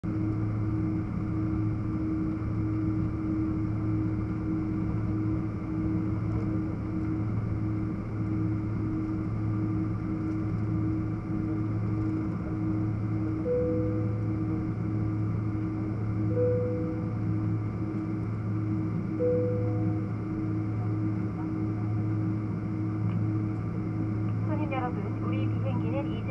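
Steady cabin drone of a Boeing 777-300ER taxiing, with its engines at low power. It holds a constant low hum, and three short tones sound a few seconds apart midway. A cabin announcement voice begins near the end.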